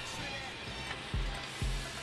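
Hot oil sizzling steadily around empanadas deep-frying in a pot, with low background music.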